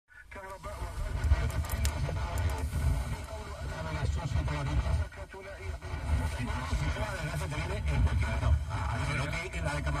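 Car radio speaker playing Spanish station COPE Málaga on 89.8 FM, received long-distance by sporadic-E skip. The broadcast is a talking voice with heavy bass, and the signal briefly dips about five seconds in.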